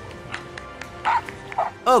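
A dog barking in about three short, separate bursts over steady background music.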